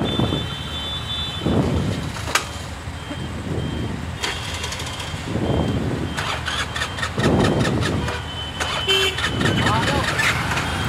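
A scooter's small petrol engine being started and revved, swelling in surges about every two seconds. The throttle is held open to keep an engine that keeps stalling running.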